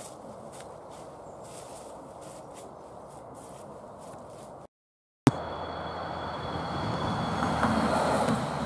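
Steady outdoor background noise with faint rustling steps on dry leaves. After a brief cut to silence and a click, a van drives past on the lane, its engine and tyre noise growing louder to a peak near the end.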